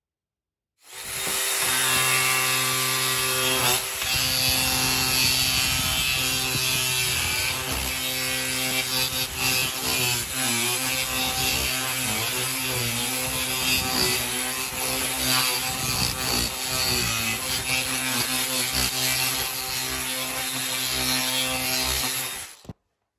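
Angle grinder with a wood-carving cutter on an extension shaft, running and grinding a round hollow into a wooden board. It starts about a second in, a steady motor whine over a coarse grinding noise, and its pitch wavers around the middle as the cutter bites into the wood.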